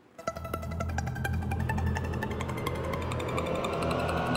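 Game-show score-countdown music playing as the score column drops: rapid, evenly spaced plucked ticking notes over a low drone, with a tone that rises slowly. It starts about a quarter second in.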